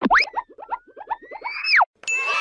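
Cartoon sound effect with a quick upward sweep, then a fast run of short springy pulses, about seven a second, under a whistle-like tone that slowly rises. At the end the tone swoops up and drops away.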